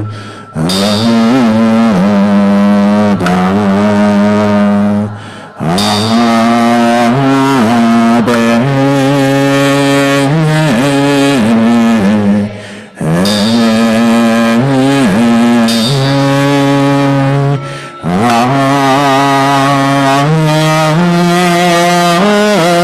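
Group chanting of Amitabha Buddha's name (nianfo) to a slow melody, long notes held and gliding between pitches. There is a short breath break between phrases every five to seven seconds.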